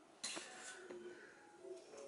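Faint scrapes and light taps of a metal putty knife spreading filler into a gap in the floor.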